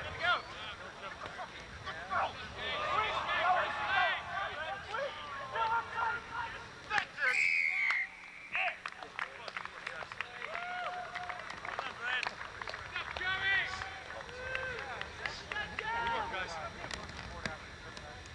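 Rugby players and spectators calling out, voices indistinct and scattered across the field. About seven seconds in, a referee's whistle gives one short blast.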